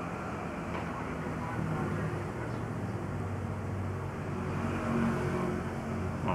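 Steady low hum and rumble of background noise, with no distinct events.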